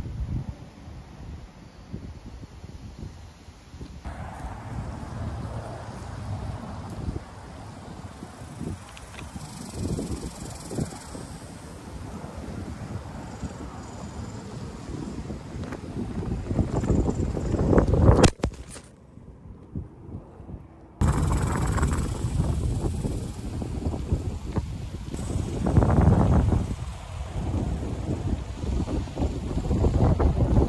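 Outdoor wind gusting against the microphone in uneven surges, heaviest just before a sudden drop about eighteen seconds in, after which it stays quieter for about three seconds before rising again.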